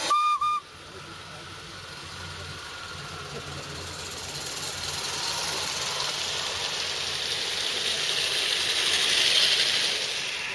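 Two short toots on a small steam whistle, then a steady steam hiss that grows louder over several seconds and peaks near the end, from a 16 mm scale live-steam garden-railway locomotive drawing closer.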